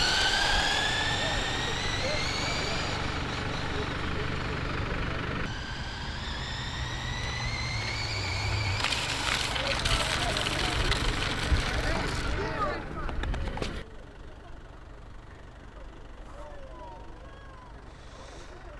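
Multi-motor electric drive of a remote-controlled LEGO Technic car whining as it accelerates, rising in pitch over the first few seconds and rising again about five seconds in, with rushing noise from the car running on asphalt. The sound drops off suddenly about fourteen seconds in.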